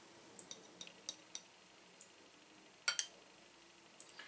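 Light glass clinks from a brown glass beer bottle and a stemmed beer chalice being handled as the pour finishes. There are several small ticks over the first two seconds, then a louder double clink about three seconds in.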